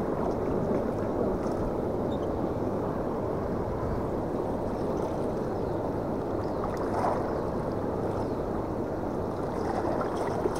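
Steady rushing noise of water washing against shore rocks, with wind on the microphone.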